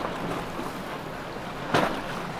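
Wind buffeting the microphone over a steady background of boat and water noise, with one short, sharp burst near the end.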